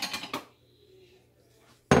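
Kitchenware being handled at the stove: a short clatter of light knocks, a pause, then one loud, sharp clank near the end.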